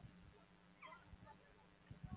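Near silence outdoors, with faint distant voices and a low hum from the open-air stream microphone.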